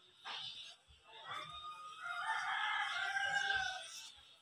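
A rooster crowing once, one long call beginning about a second in and ending just before the close. A brief knock sounds just before it.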